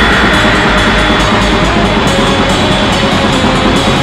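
Raw black metal recording: a loud, unbroken wall of distorted guitars and drums.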